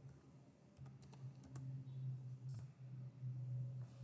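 Faint computer keyboard typing and clicks, a few scattered keystrokes, over a steady low hum.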